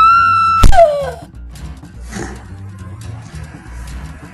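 A high-pitched scream held for about half a second, cut off by a heavy blunt blow like a pipe strike, the loudest sound, followed by a short falling cry, over background music.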